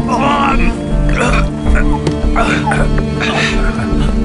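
Background film music with held tones, over a man's short pained groans and grunts, four of them about a second apart, as he is hauled into a seat.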